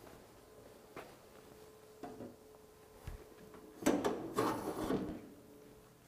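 A few light clicks and a low knock as the wheel brakes of a Hunter DAS 3000 calibration fixture are locked, then, about four seconds in, a louder scraping clatter lasting about a second as the fixture's front contact plate is pulled off.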